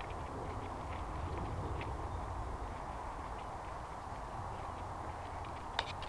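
Footsteps on a dirt-and-gravel track, heard as faint scattered ticks over a steady low rumble, with a few sharper clicks near the end.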